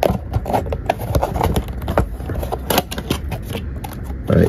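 A small cardboard box with a clear plastic window being handled and opened by hand close to the microphone: a run of irregular taps, clicks and scrapes from the card and plastic.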